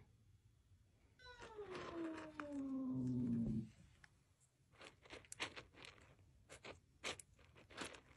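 Cat giving one long meow that falls in pitch, starting about a second in and lasting a couple of seconds. It is followed by a scatter of small clicks and rattles from a hand stirring dry cat kibble in a metal bowl.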